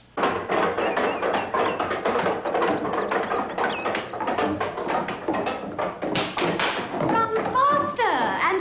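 Footsteps thumping and tapping quickly on wooden stairs, mixed with a dense blur of voices and music.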